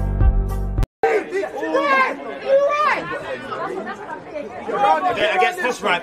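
Countdown intro music with a steady beat that cuts off abruptly just under a second in. After a brief gap, several people's voices chatter over one another with no clear words.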